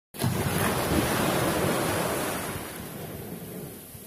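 Shallow sea waves washing in over a sandy beach: a rush of water that is loudest in the first couple of seconds, then fades as the wash spreads out.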